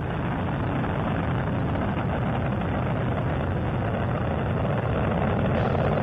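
Space Shuttle Endeavour's solid rocket boosters and three main engines firing during ascent: a steady, deep rumbling noise that swells slightly near the end.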